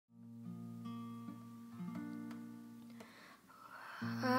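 Acoustic guitar played quietly, a few picked notes and chords ringing on, struck about every half second and fading near the end, as the song's intro.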